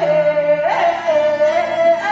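Yue opera singing: a long, wavering sung note that slides upward about two-thirds of a second in and settles again, over the opera band's instrumental accompaniment.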